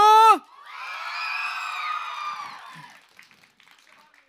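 Concert audience shouting and cheering in answer to the singer's call to make noise, a mass of many voices that swells just after a man's last word on the microphone and fades out by about three seconds in.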